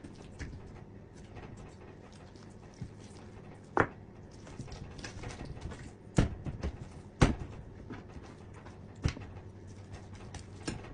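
Chef's knife cutting up a raw whole chicken on a plastic cutting board: a few sharp knocks of the blade hitting the board, spaced a second or two apart and loudest about two thirds of the way through, with quieter ticks and handling sounds between.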